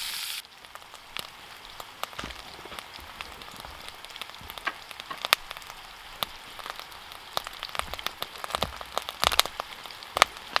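Eggs and mushrooms frying in hot fat in a stainless steel pan over charcoal: a loud sizzle with stirring drops off about half a second in, leaving a quieter sizzle with scattered sharp pops of spitting fat that come thicker near the end.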